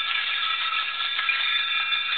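Hand-held percussion rattles shaken without a break, giving a dense, even clatter with several high ringing tones held over it.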